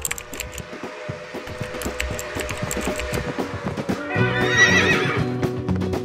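Outro music with a horse whinny about four seconds in: one wavering call lasting about a second.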